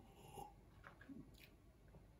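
Near silence with a few faint mouth sounds of a person sipping and swallowing sherry from a tasting glass.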